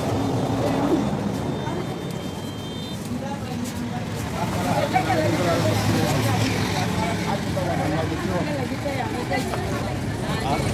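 Several people talking at once in the background, voices overlapping, over a steady low hum.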